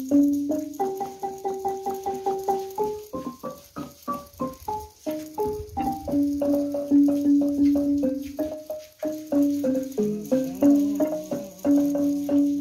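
Wooden-keyed xylophone struck with mallets, playing a melody of quick notes that each ring briefly and fade, with fast runs of the same note repeated several times a second.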